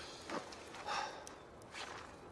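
Faint rustling and scuffing of a man's clothing and gear as he moves about and sits down: three short, soft rustles.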